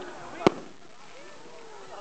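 An aerial firework shell bursting with a single sharp bang about half a second in.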